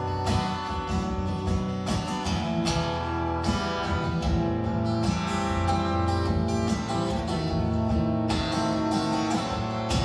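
Solo acoustic guitar strumming chords at a steady rhythm, an instrumental opening with no voice.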